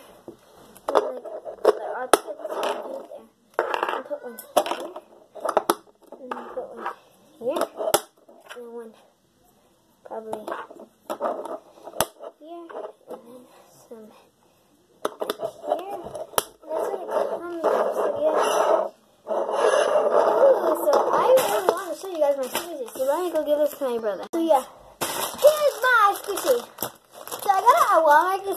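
A girl's voice, talking or half-singing indistinctly, with scattered sharp clicks and knocks of hard plastic toy building blocks being handled and snapped together.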